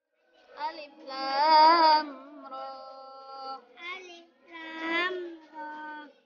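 A young girl chanting Quranic recitation in a melodic, drawn-out style, in several long phrases with wavering notes. About halfway through she holds one steady note for over a second.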